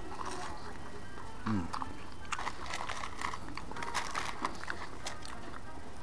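A person chewing French fries close to the microphone, with scattered small clicks and crackles, over steady room noise and faint background music.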